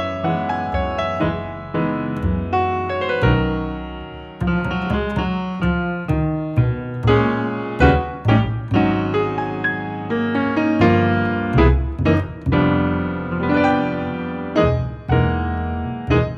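Jazz duo of grand piano and plucked upright double bass playing a tune: piano chords and melody over a walking bass line.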